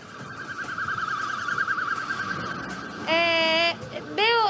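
An electronic siren warbling rapidly on a high, fairly steady pitch for about three seconds, then stopping.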